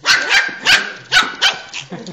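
Shiba Inu puppy barking, about six short barks in quick succession.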